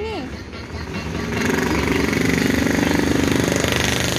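A motorcycle engine running close by, starting about a second in and holding loud and steady with a rapid pulsing beat.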